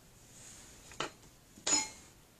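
Two light knocks of small objects set down on a tabletop, about a second apart, the second louder with a short ringing clink: a jar of glitter and a stir stick being put down.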